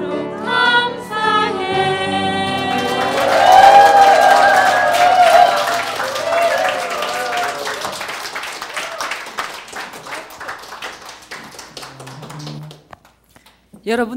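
A small group of men and women singing without accompaniment finishes its song in the first couple of seconds, then the audience applauds, loudest about four seconds in with voices calling out over the clapping. The applause thins out and has died away by about thirteen seconds.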